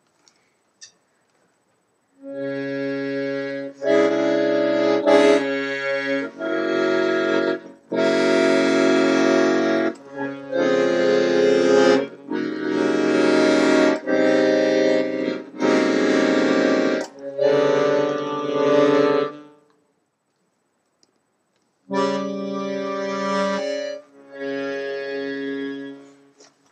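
Accordion played badly: a string of held chords, each lasting one to two seconds with short breaks between, after a brief silence. A pause of about two seconds follows, then two more chords near the end.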